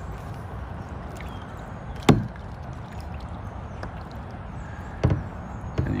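Paddling a plastic sit-on-top kayak: a steady low rumble of water and movement, with two sharp knocks about three seconds apart, the first the louder, as the paddle strikes the hull.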